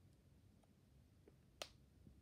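Near silence: room tone, broken by a single short, sharp click about three-quarters of the way through.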